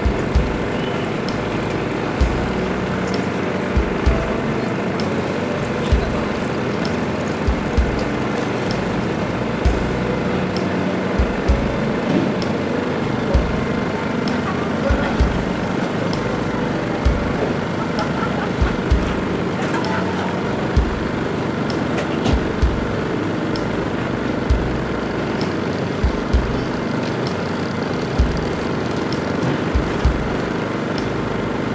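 Motocross-meeting ambience: dirt-bike engines running at a distance under a public-address voice and music. Low thumps hit the microphone every second or two.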